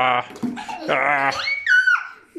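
Wordless playful vocal sounds: a drawn-out, wavering voice, then a short high-pitched squeal that rises and falls near the end.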